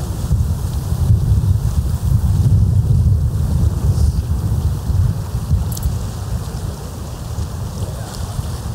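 Wind buffeting the camera microphone: a loud, gusty low rumble.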